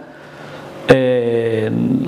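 A short pause, then a sharp click and a man's voice holding one steady, drawn-out vowel for under a second, a hesitation sound between phrases.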